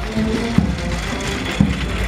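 Marching brass band playing in the street, its bass drum beating steadily about once a second, with the brass fainter under the noise of the crowd.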